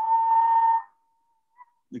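A man whistling one long steady note in imitation of a rufous-throated solitaire's song, which he likens to a rusty playground swing. The note holds for just under a second, then trails off faintly.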